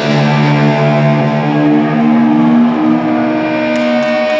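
Live rock band's distorted electric guitars sustaining a ringing chord, with a slow line of long held notes stepping from pitch to pitch over it, as the song winds down to its end.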